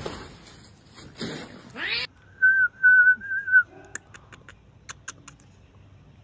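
Rose-ringed parakeet whistling a thin, warbling note for about a second, a little way into the clip, followed by a few faint clicks.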